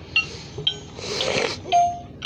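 Handling sounds on a battery-powered Gemmy animated Frankenstein toy between plays of its tune: two sharp clicks, a brief rustle about a second in, then a single short electronic note near the end as the tune starts again.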